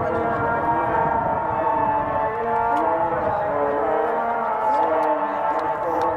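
A solo voice chanting in long, drawn-out notes that step up and down in pitch, in the manner of an Arabic nasheed or call to prayer.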